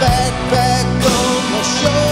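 A slow blues song playing, with a wavering, bending lead melody over steady bass and drum hits.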